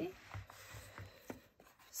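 Faint rustling of paper with a few soft taps as hands handle a paper notebook and its card cover.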